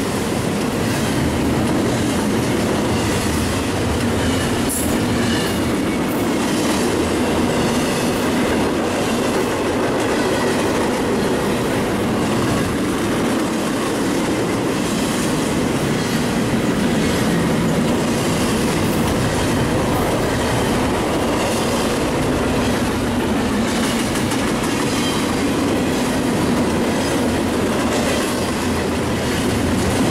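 CSX intermodal freight train of trailers and containers rolling past close by: a loud, steady rumble of wheels on rail, with clicks as the wheels cross the rail joints.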